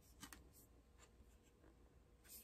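Near silence: room tone with a couple of faint soft clicks about a quarter second in.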